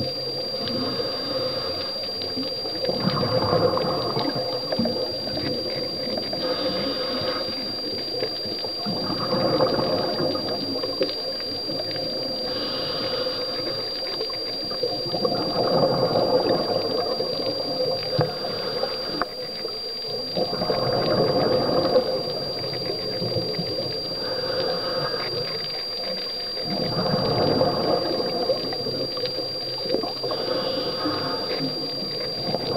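A scuba diver's regulator breathing, heard underwater: a burst of exhaled bubbles about every six seconds, with quieter breathing between.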